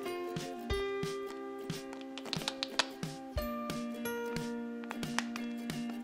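Gentle background music with held notes that change a few times, with faint taps and clicks of fingers handling a hollow plastic toy egg.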